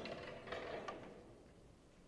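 Snooker balls clicking against one another and the cushions just after a break-off shot: a quick run of hard knocks that dies away within about a second and a half.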